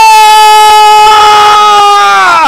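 A man singing one long, loud note into a microphone, held steady in pitch.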